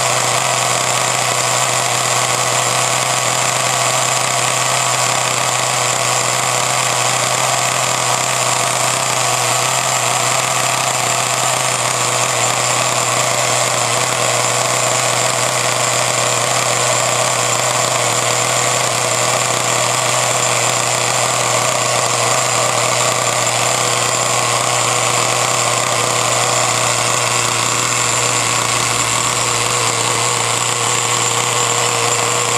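Small two-stroke glow-fuel engine of a DeAgostini Ferrari F2007 radio-controlled car running steadily with no load on the bench during its break-in run, holding one even speed.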